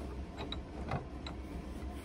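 Cast-iron bench vise being tightened on a bolt by its handle: a few faint metallic clicks and creaks from the turning screw and handle.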